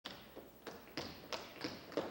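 Tap shoes striking a wooden stage floor in an even walking rhythm, about three crisp taps a second, as two tap dancers enter.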